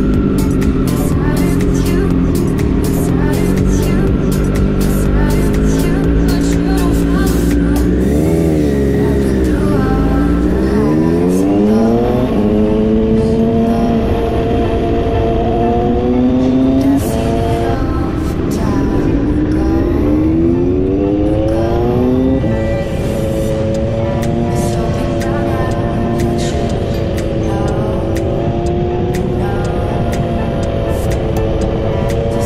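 Motorcycle engine running steadily, then pulling away and accelerating through the gears: the pitch climbs, falls at a shift, climbs again and falls at a second shift, then settles.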